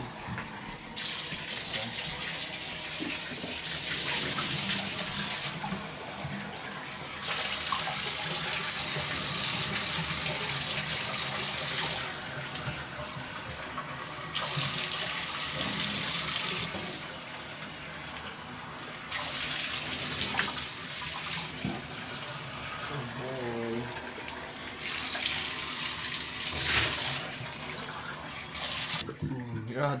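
Running water from a bathtub tap rinsing a dog standing in the tub. The flow swells and drops in stretches of a few seconds as the stream moves over the dog and tub, and stops near the end.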